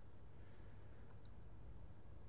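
A few faint clicks from a computer mouse scroll wheel as the map is zoomed out, over a low steady room hum.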